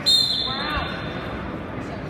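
Referee's whistle blown once at the start: a short shrill blast of about half a second that stops the wrestling. Crowd voices and shouting in the gym carry on underneath.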